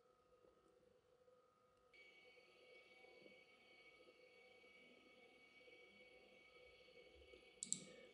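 Near silence: faint room tone and hiss, with a single short click near the end.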